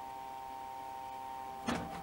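Egg incubator's fan running with a steady whine of several close tones, with a single knock near the end as the incubator or an egg is handled.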